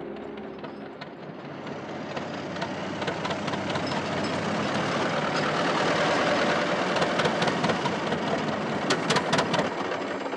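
Engine of an old flatbed truck running and growing louder as it approaches, with a rattle of sharp clicks near the end.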